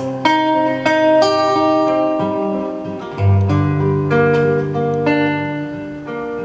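Classical acoustic guitar played alone: a run of plucked notes ringing out over held bass notes, with no voice.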